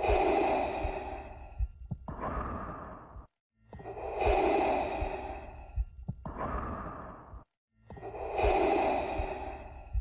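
Darth Vader's respirator breathing: a long, hissing breath in of about two seconds followed by a shorter breath out, repeating in a steady cycle about every four seconds.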